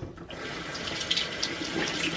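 Bathroom sink tap running steadily, starting shortly after the start, as a makeup sponge (beauty blender) is wetted under the water before use.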